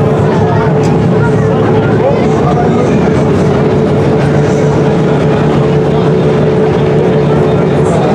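Opel Kadett GSi rally car's engine idling steadily, with voices talking over it.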